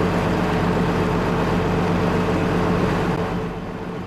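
A boat's engine running steadily while under way on the river, a low, even hum under a loud rush of water and wind noise.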